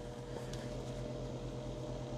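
A steady mechanical hum: a constant low drone with two steady higher tones over a faint hiss, as from a fan or motor running in the room.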